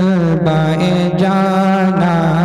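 A man singing a naat solo without instruments, drawing out long, ornamented notes with a wavering vibrato.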